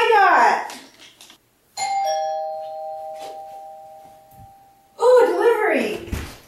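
Doorbell chime ringing ding-dong: a higher note struck, then a lower one a moment later, both ringing on and fading away over about three seconds.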